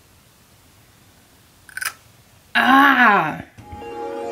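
A woman's wordless, frustrated groan that falls in pitch, lasting under a second, about two and a half seconds in, after a brief short noise. Soft background music begins near the end.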